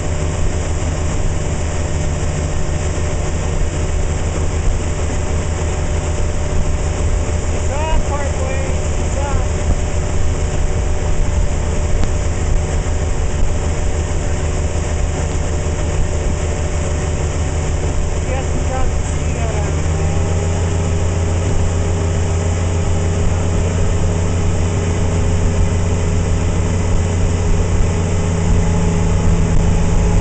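Tow boat's engine running steadily under load while pulling water skiers, with wind and churning wake water; the engine note rises slightly about twenty seconds in.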